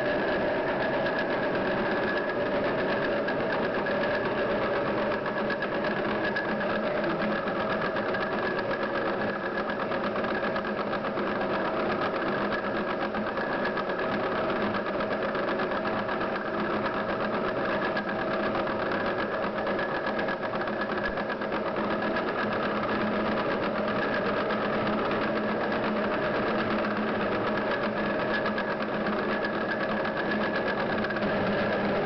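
Electric dough mixer running steadily at low speed with a constant motor hum, beating eggs into choux paste.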